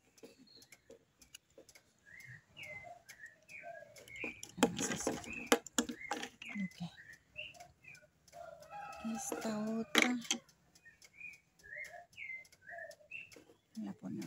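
Small birds chirping in short repeated calls throughout, with a chicken's long, wavering call about nine seconds in. A loud rustling clatter of something being handled comes about five seconds in.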